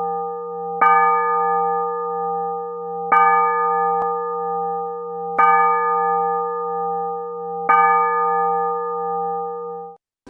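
A single church bell tolling at a slow, even pace: four strokes about every two and a quarter seconds. Each stroke rings on with a deep hum under it until the next, and the ringing cuts off suddenly at the end.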